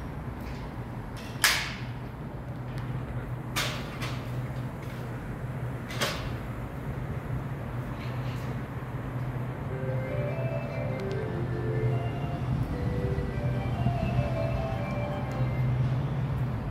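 Railway platform ambience: a steady low hum with three sharp knocks in the first six seconds. A faint melody from the station's loudspeakers starts about ten seconds in.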